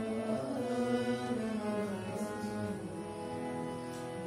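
A man singing a slow song unaccompanied, holding long drawn-out notes that bend and slide in pitch.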